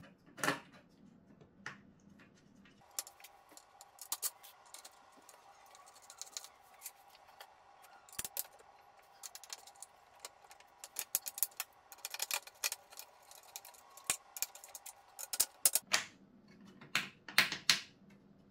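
Screws and a screwdriver clicking and clinking against a metal target face and a wooden case as the large mounting screws are put back in and driven home. The clicks come irregularly throughout, with a loud cluster near the end.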